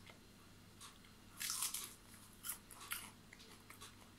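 A child biting and chewing a crisp lettuce leaf: a few short, faint crunches, the biggest about a second and a half in, then smaller ones.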